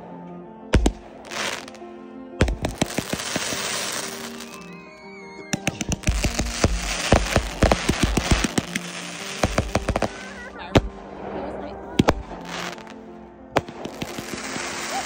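Consumer fireworks going off: single sharp bangs and a fast string of reports, with stretches of dense crackling from the bursting stars. Background music with sustained tones plays under them.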